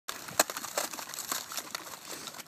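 Thin puddle ice cracking and crunching under several dogs' paws as they wade in it, an irregular crackle with one sharp crack about half a second in.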